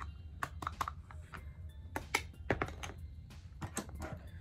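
Small sharp clicks and taps, about a dozen at irregular intervals, from makeup containers and a brush being handled: a loose-powder jar and its lid.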